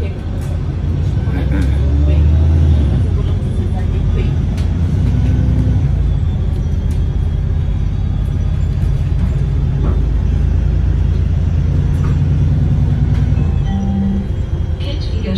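City bus engine and drivetrain running with a steady low rumble, heard from inside the passenger cabin as the bus drives along; a little louder about two seconds in.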